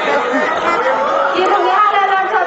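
Speech only: loud talking, with voices overlapping at times.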